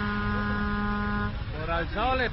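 Vehicle horn sounding one steady blast that cuts off about a second and a half in, over low traffic rumble; a voice follows near the end.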